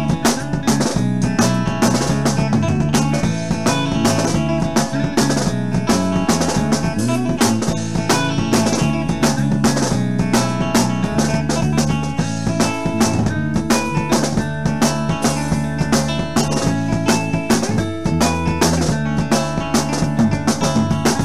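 Midwest emo band recording: electric guitar and bass over a busy drum kit, playing steadily and densely with rapid drum hits.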